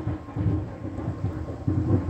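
Thunderstorm ambience: low rumbling of thunder over a steady rain-like hiss, swelling and fading several times.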